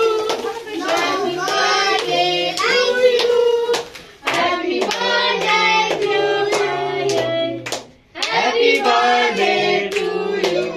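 Children singing a birthday song to steady, rhythmic hand-clapping. The singing and clapping break off briefly twice, about four and about eight seconds in.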